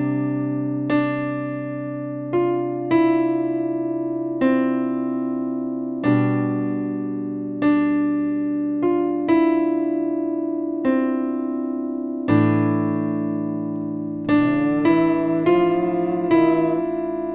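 Electronic keyboard playing a slow, piano-like introduction in C major. Held left-hand chords change about every six seconds, from C sus2 to G over B to an open A-minor fifth. Over them a right-hand line of single notes is struck about once a second, and the notes come quicker near the end.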